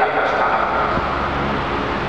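A pause in a man's lecture into a microphone: a steady noise of the room and the recording fills the gap. A few faint traces of his voice come just at the start.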